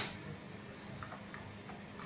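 A few faint, light plastic clicks about a second in as hands work wiring-harness connectors in the engine bay, over a low steady hum.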